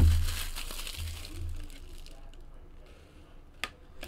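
Clear plastic shrink wrap being peeled off a cardboard box and crinkled in the hand. The rustling is loudest in the first two seconds, then dies down, and a single sharp click comes near the end.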